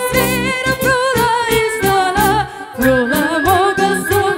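Live band music: a lead melody wavering in pitch over a steady bass and beat.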